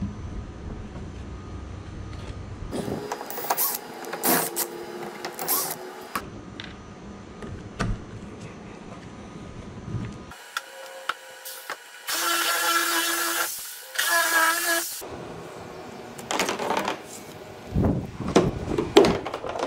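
Plastic pipe fittings handled against a plastic kayak hull: scattered clicks, knocks and scrapes, with two short squeaks in the second half. A low hum runs under the first few seconds.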